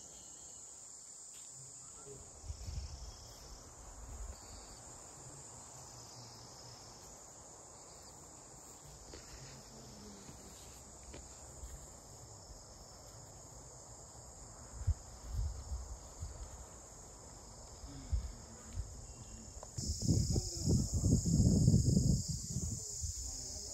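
Insects singing in a steady high-pitched chorus that grows louder near the end, with irregular low rumbles on the microphone, heaviest in the last two seconds.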